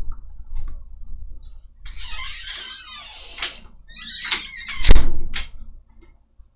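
A door being opened and shut: a swish of movement, then a loud thump as it closes, just before five seconds in, followed by a latch click.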